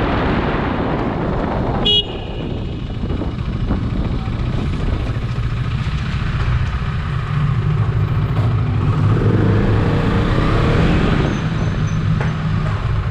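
KTM RC 390's single-cylinder engine running on the move, with wind rushing over the microphone at first. About two seconds in a brief horn toot sounds and the wind drops away, leaving the engine's steady low hum at low speed, swelling a little later on.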